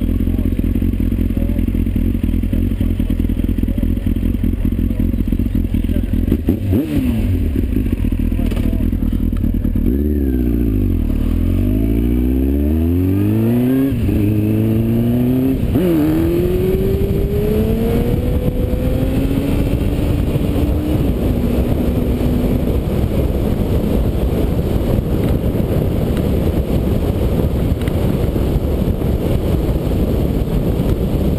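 Kawasaki motorcycle engine idling steadily for about ten seconds, then pulling away: the pitch rises and drops back several times as it accelerates through the gears. It then settles into a steady cruise, with wind and road noise over the engine.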